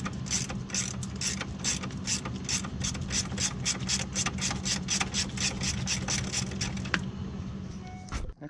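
A 17 mm ratcheting wrench clicking rapidly and evenly, about five clicks a second, as a nut is backed off the steering knuckle. The clicking stops about seven seconds in.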